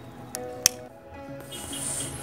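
A single sharp snip of scissors at a succulent's flower stalk, about two-thirds of a second in, over soft background music.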